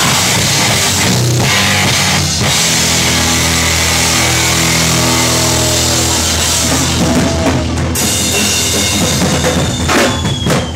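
Finnish hardcore punk band playing live and loud: distorted guitars and bass chords over a pounding drum kit with cymbals. About eight seconds in the cymbals stop and the chords ring on.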